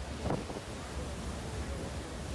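Wind buffeting the microphone over a steady low rumble on the deck of a moving boat, with one short louder gust about a third of a second in.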